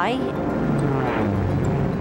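Propeller aircraft engine passing by, its pitch falling through the middle, with background music underneath.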